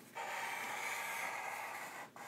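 Black Sharpie felt-tip marker drawn across paper in one long stroke: a steady, faint hiss lasting nearly two seconds.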